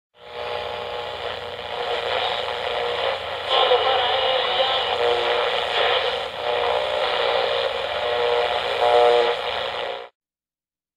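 Radio static and hiss with several steady whistling tones running through it, muffled as if heard through a narrow-band receiver, then cut off abruptly.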